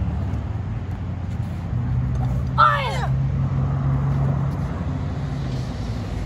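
A child's short karate shout (kiai), falling in pitch, about two and a half seconds in, over a steady low hum of a vehicle engine.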